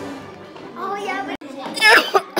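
Children's voices talking indistinctly over soft background music. The sound drops out briefly about one and a half seconds in, then a loud, high child's voice comes in near the end.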